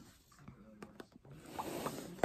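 Pink cardboard gift box being opened: the lid slides and lifts off with a light cardboard scrape, and a couple of small taps about a second in.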